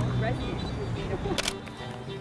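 Digital SLR camera shutter firing once: a single sharp click about one and a half seconds in, over background music and faint voices.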